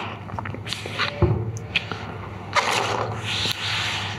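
Hands rubbing and smoothing wet watercolour paper on a board, a papery swishing scrape that is loudest for about a second past the middle, with a single knock about a second in.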